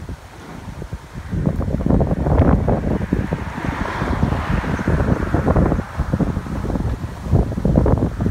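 Wind buffeting the microphone: a gusty, uneven low rumble that builds about a second and a half in and stays strong.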